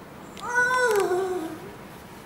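A child's voice making one drawn-out, whiny wordless sound about a second long, its pitch rising slightly and then sliding down.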